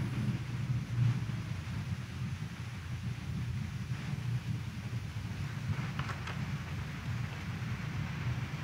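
Low, steady rumble of a large church's room noise, with a few faint light knocks about six seconds in, as the congregation gets to its feet.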